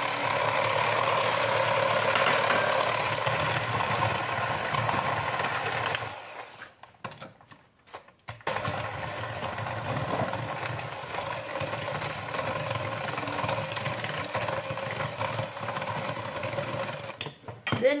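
Electric hand mixer running steadily as it beats chunks of butter into a beaten egg and sugar mixture. It stops for about two seconds some six seconds in, then runs again until just before the end.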